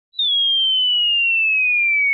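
A falling-bomb whistle sound effect: one pure whistling tone that starts a moment in and glides slowly down in pitch.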